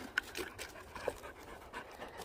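Dog panting in short, uneven breaths.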